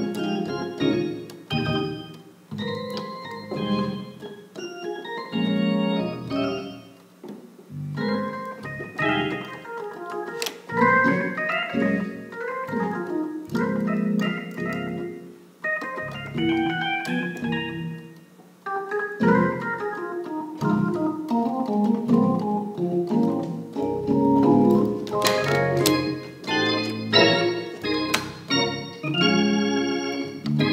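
Gospel organ playing sustained chords in A flat, in phrases broken by short pauses, growing fuller and brighter near the end.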